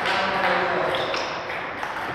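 Table tennis ball clicking against rackets and the table during a rally.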